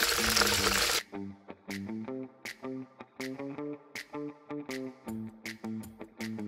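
Banana slices deep-frying in hot oil in a wok, a loud sizzle that cuts off suddenly about a second in. After that only background music: plucked guitar notes over a steady light beat.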